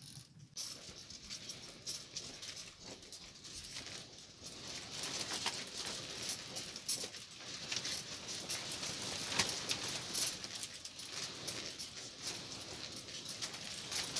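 Storm wind buffeting a pop-up camper: the canvas and frame flap and rattle in a dense run of small clicks and crackles that grows louder about a third of the way in.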